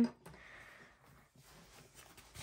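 Faint soft rubbing and sliding of hard plastic graded-card slabs being shifted by hand on a stack, otherwise quiet room tone; a voice trails off at the very start.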